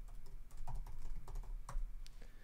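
Typing on a computer keyboard: a quick, irregular run of key clicks as a terminal command is entered.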